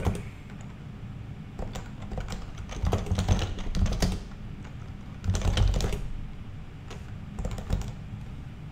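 Computer keyboard being typed on in several short bursts of key clicks with pauses between them, as shell commands are entered in a terminal.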